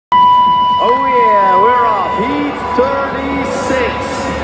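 Announcer's voice over an arena public-address system. A steady high-pitched tone starts abruptly at the very beginning and runs under the voice.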